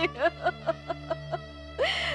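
A woman weeping: a string of short, catching sobs, then a rising wail near the end, over steady background music.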